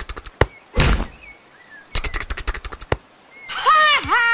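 Cartoon sound effects: a rapid fluttering flap, a thump about a second in, a second fluttering flap about two seconds in, then a cartoon bird chirping with rising-and-falling calls near the end.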